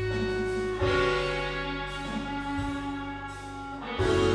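Playback of a song's reverb bus: sustained, reverb-washed instrument chords, with a chord change about a second in. A mid-side EQ that boosts the highs on the stereo sides only is being bypassed and re-engaged for a before-and-after comparison.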